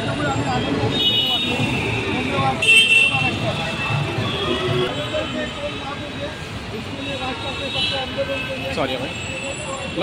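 Several people talking at once over steady road traffic noise, with a few brief high-pitched tones about one, three and eight seconds in, and a sharp loud knock or clatter about three seconds in.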